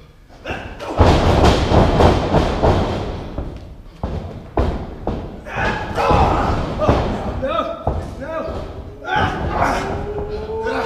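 Heavy thuds of wrestlers' bodies hitting the wrestling ring's mat, the loudest about a second in and more a few seconds later, amid shouting voices.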